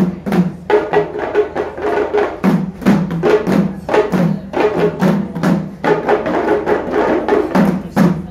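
Percussion-led music: drums struck in a quick, steady rhythm of about three to four beats a second.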